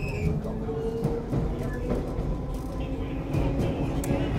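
A D78 Stock District Line train running, heard inside the carriage: a steady rumble of wheels on track with scattered clicks, and a motor whine that rises slightly in pitch over the first second.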